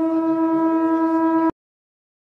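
A conch shell (shankha) blown in one long steady horn-like note, as sounded during a temple arati. The note cuts off suddenly about one and a half seconds in.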